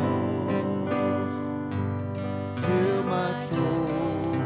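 Acoustic guitar strummed in a slow hymn accompaniment, with voices singing along.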